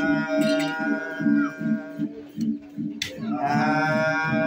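Unaccompanied singing of verses: one voice holds a long note that fades out about two seconds in, and a new sung phrase starts about three seconds in.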